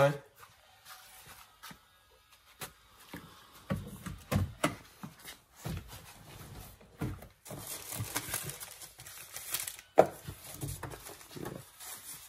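Papers and plastic rustling and knocking as things are handled in a car's cabin: scattered clicks and knocks, a stretch of crinkling about two-thirds of the way through, and a sharp click near the end.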